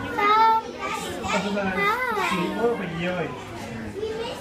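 Children's voices talking and calling out, with pitch sweeping up and down, loudest near the start and again around the middle.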